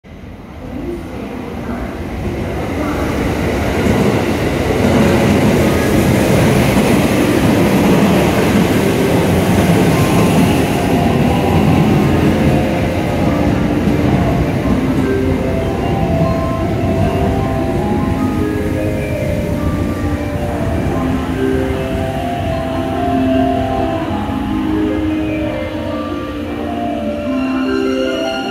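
JR West 683-series electric express train arriving at a platform: its running noise builds over the first few seconds, is loudest for several seconds as the cars pass, then eases as it slows to a stop. From about halfway, a melody of short notes at changing pitches plays over it.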